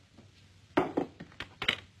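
A few light knocks and clicks of dishes being set down: one about three-quarters of a second in, another a moment later, then a quick run of smaller clicks near the end.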